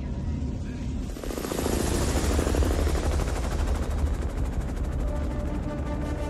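Film sound effect of a giant alien spaceship overhead: a deep, steady rumble, with a roaring rush that swells about a second in and carries a rapid, even fluttering like rotor chop.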